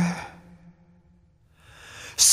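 The tail of a pop song fades out into a moment of near silence, then a singer's breath rises in near the end.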